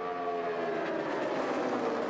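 A pack of NASCAR Cup Series stock cars running at speed, their V8 engines making a steady drone whose pitch slowly falls as the cars go by.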